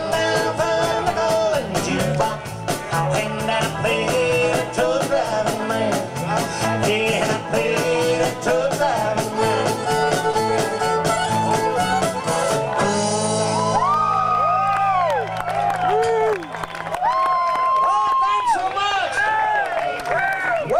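Live country band with fiddle, electric guitars, bass and drum kit playing at full volume. About two-thirds of the way through the drums stop and a final chord rings on under high sliding notes.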